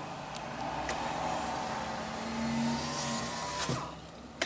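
A motor vehicle passing outside, heard from inside a car: road and engine noise swells to a peak a little past the middle with a faint rising whine, then fades shortly before the end.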